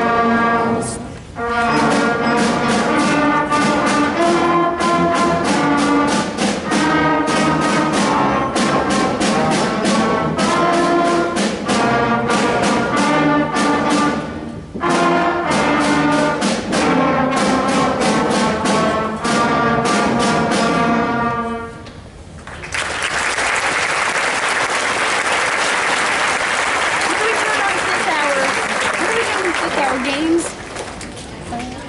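School concert band of brass and woodwinds playing a piece in held, stepped chords, with short breaks between phrases; the piece ends about 22 seconds in. Audience applause follows.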